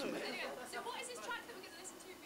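Speech only: a man finishes a sentence, then quieter talking continues in the background and fades.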